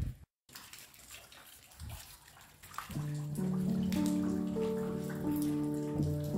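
Soft, steady rain noise, broken by a moment of dead silence just after the start. About halfway through, a slow, calm piano melody comes in with sustained notes over the rain.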